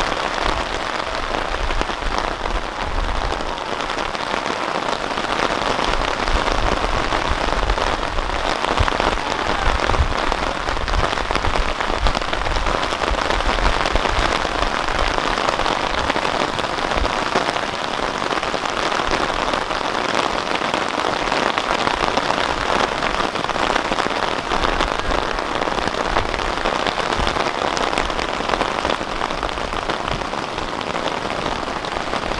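Steady rain falling, an even hiss throughout, with intermittent low rumbles underneath.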